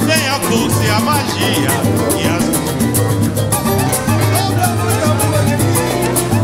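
Live pagode samba band playing: cavaquinho and acoustic guitars over pandeiros and hand drums, with a quick, even percussion beat and a steady low bass. A singing voice weaves over it in the first half.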